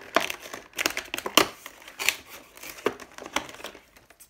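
Cardboard advent calendar door being torn open along its perforations and the contents pulled out: a run of irregular tearing and crinkling crackles, the loudest about a second and a half in.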